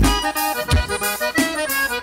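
Forró music: an instrumental passage with accordion playing a melody of held notes stepping from one pitch to the next over the band, without singing.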